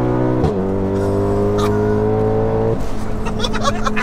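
The 2.0-litre turbocharged four-cylinder of a tuned Mk7 VW Golf R is pulling hard at full boost, heard from inside the cabin, its note climbing steadily. About half a second in, a quick upshift drops the pitch sharply with a click. The note climbs again, then falls near three seconds in and holds steady, with laughter near the end.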